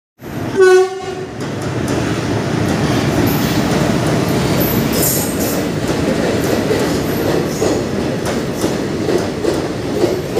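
A short train horn blast under a second in, the loudest sound, then Indian Railways passenger coaches rolling steadily past the platform, their wheels clacking over the rail joints.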